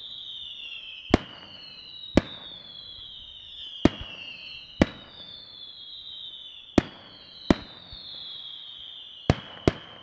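Aerial firework shells bursting in a display, about eight sharp bangs at irregular intervals, over a chain of high whistling tones that each glide downward and overlap one another.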